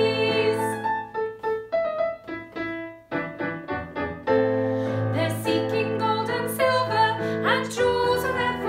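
A woman singing a children's song to a Korg electronic keyboard set to a piano sound. For a few seconds in the middle only the keyboard plays, then the singing comes back.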